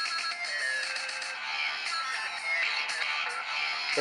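Electronic dance music leaking from Sony MDR-ZX600 on-ear headphones set close to the microphone. It sounds thin and tinny, with a steady beat and almost no deep bass.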